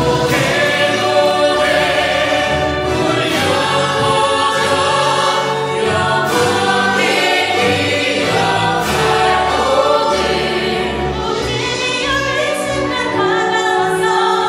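A small mixed group of singers, men and women, singing together in harmony into handheld microphones.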